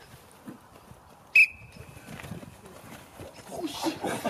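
One short, sharp blast on a referee-style whistle about a third of the way in. It is the start signal for the rugby lineout lifters to launch their jumpers.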